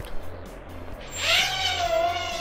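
Hubsan H107C micro quadcopter's motors and propellers spinning up about a second in: a high whine that rises in pitch, then holds steady.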